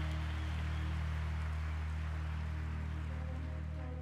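Live worship band holding a sustained low chord as the song rings out, with no drum beat and the level slowly fading. Heard through the drummer's in-ear monitor mix.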